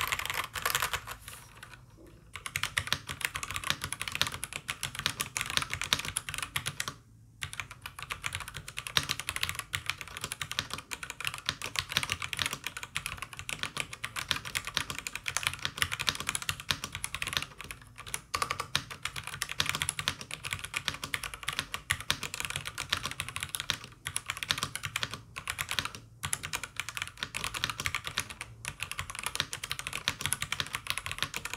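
Fast, continuous typing on an E-DRA EK375 Pro mechanical keyboard, with stock E-DRA red linear switches under PBT keycaps on a foam-dampened PC plate: a dense stream of key clacks, with short pauses about two seconds in and about seven seconds in. The stabilizers are stock and largely free of rattle.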